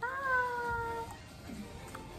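A woman's drawn-out, high sing-song "bye", held for about a second with its pitch falling slightly.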